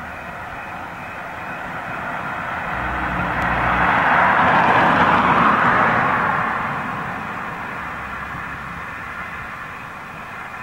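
A vehicle passing by: a rush of noise that builds, is loudest about five seconds in, and fades away again.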